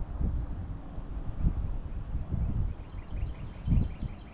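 Wind buffeting the microphone in irregular gusts, a low rumble that rises and falls.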